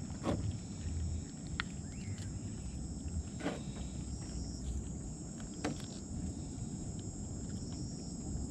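Crickets or other night insects chirring steadily in high tones, with a low rumble underneath. A few short, sharp clicks and taps stand out, from hands working a small fish on a boat's hull as it is gutted.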